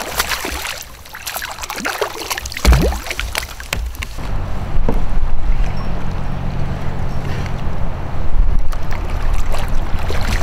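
A hooked smallmouth bass splashing and thrashing at the surface beside a kayak for about four seconds. After that, a steady low hum with wind-like noise, with louder surges near the end as another hooked fish breaks the surface.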